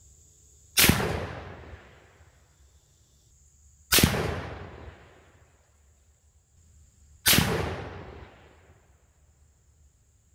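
Three shots from a Marlin 336C lever-action rifle in .35 Remington, about three seconds apart, each sharp report trailing off in a long echo.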